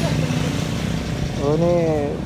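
A motorcycle engine running steadily at idle, with a man's voice starting near the end.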